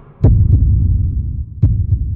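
Heartbeat sound effect: deep double thumps, lub-dub, twice, about a second and a half apart.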